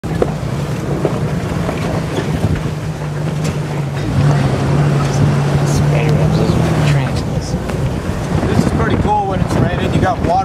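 A jeep's engine drones steadily as it drives over a rough off-road trail, with wind on the microphone. The engine note lifts slightly about four seconds in and fades away about seven seconds in; a voice starts near the end.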